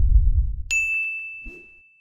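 Logo-sting sound effect. A low rumbling swell fades out, and under a second in a single bright ding strikes and rings on steadily.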